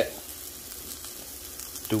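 Sliced white mushrooms with garlic, shallot and rosemary frying in olive oil in a nonstick pan: a steady, even sizzle.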